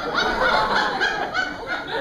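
Theatre audience laughing at a comedy scene, the laughter breaking out all at once at the start.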